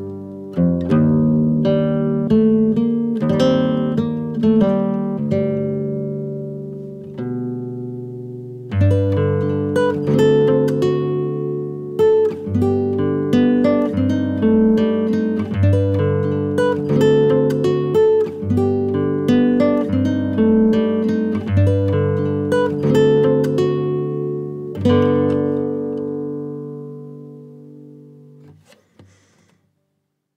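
Instrumental guitar music: a run of picked acoustic-guitar notes with a brief held note about a third of the way in, ending on a final chord that rings out and fades away near the end.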